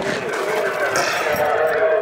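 Unclear, garbled voices coming over a CB radio receiver, with a brief metallic clink about a second in.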